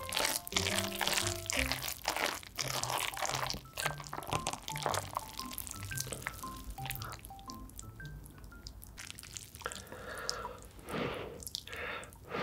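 Sticky, wet squishing of saucy instant noodles and melted cheese being stirred and lifted with chopsticks, with a few louder wet bursts near the end. Light background music with short plucked notes plays throughout.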